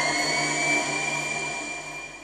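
Electronic intro music: a rising synth sweep settles into a sustained high tone over a low drone and fades out.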